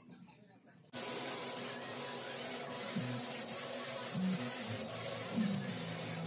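Compressed-air spray gun with a gravity-feed cup spraying a coat of polyurethane: a loud, steady hiss that starts abruptly about a second in.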